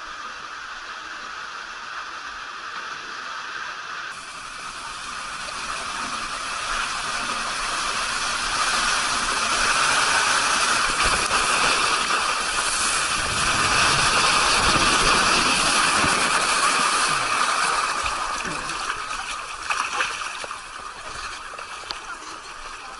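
Rushing water and spray noise of a rider sliding down a water slide, heard from a camera on the rider, building from a few seconds in, loudest in the middle and easing near the end.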